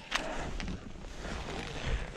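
Wind buffeting the microphone with a low rumble, plus faint rustling and a few soft knocks from moving about.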